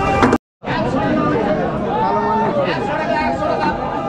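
Several people talking over one another in busy chatter, broken by a brief silent gap about half a second in.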